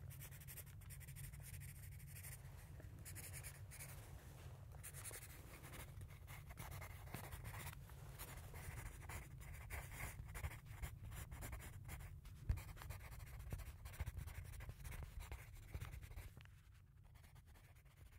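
Pencil scratching on paper in quick, irregular strokes over a low steady hum, fading away near the end.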